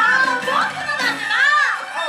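Stage-show music with performers' voices over it. One high vocal call rises and falls in pitch about one and a half seconds in.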